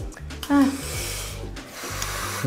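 A woman's short "ah", then about a second of soft, breathy hiss.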